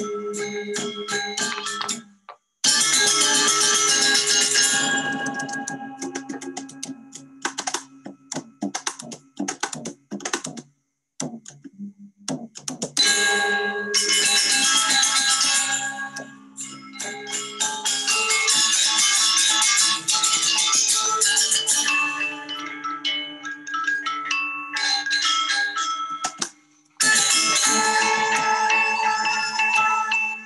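Balinese gamelan gong kebyar playing: bright, ringing bronze metallophones and gongs with kendang drums, in loud runs that break off abruptly about 2 s in, about 10 s in and near the end, then start again. It is a recording played back over a video call.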